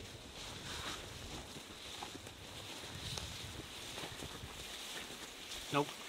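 Low, steady wind rumble on the microphone over faint rustling and crunching of dry brush as a mule deer carcass is dragged through it. A short spoken word comes near the end.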